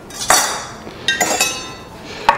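Steel kitchen knives clinking together twice as a knife is picked up, the second clink ringing briefly.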